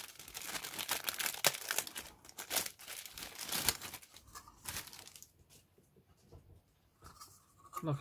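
Clear plastic bag crinkling and rustling as hands open it and slide a plastic model-kit part out, a dense crackle for about the first five seconds, then only faint handling.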